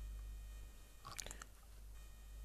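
Faint background hum with a brief cluster of small, soft clicks a little past a second in.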